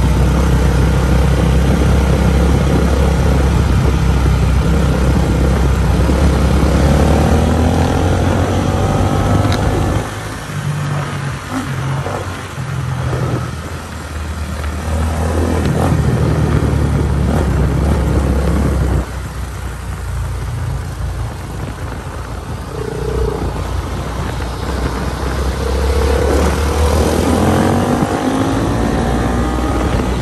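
Honda CRF450R dirt bike's single-cylinder four-stroke engine being ridden and revved, its pitch rising and falling through the gears. It is loudest for the first ten seconds, drops suddenly about ten seconds in and again near twenty, and climbs in revs again near the end.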